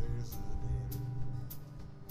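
Live acoustic blues: two acoustic guitars playing, over a steady crisp percussion tick about twice a second.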